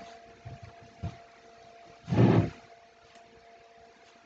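Faint taps and scrapes of a loom-knitting hook lifting yarn loops over the loom's pegs, under a steady faint electrical hum. About halfway through comes a short, louder murmur of voice.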